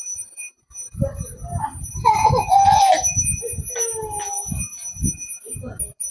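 A bell ringing steadily in the background, under a small child's voice and soft knocks.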